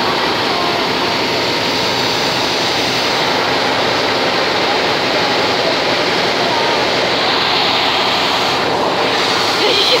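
Steam locomotive venting steam: a loud, steady hiss that runs without a break.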